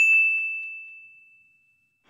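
A single bell-like ding sound effect: one struck high tone that fades away smoothly over about a second and a half.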